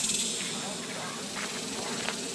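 A steady, dense high-pitched insect chorus, with a few faint ticks in the leaf litter.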